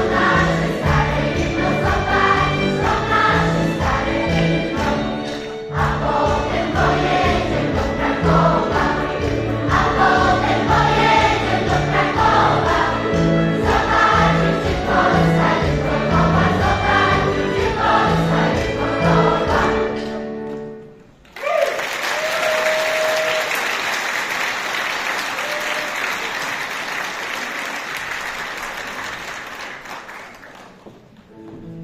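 A large mixed choir of children's and adult voices singing with keyboard accompaniment; the song ends about twenty seconds in, and the audience then applauds, the applause slowly dying away.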